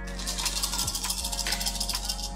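A handful of plastic eight-sided game dice rattling as they are shaken for a re-roll, a dense, fast clatter through the whole two seconds. Background music plays underneath.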